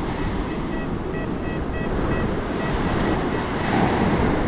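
XP Deus 2 metal detector giving short, high beeps again and again, about two or three a second, as the coil sweeps back and forth over a buried target. The beeps are the detector's signal on a solid non-ferrous target reading 80. Wind on the microphone and surf noise run underneath.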